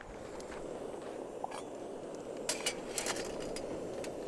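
Pasta boiling and bubbling in a stainless steel canteen cup on a gas canister stove as it is stirred with a spoon. There is a steady bubbling noise throughout, with a few light clicks of the spoon against the cup near the end.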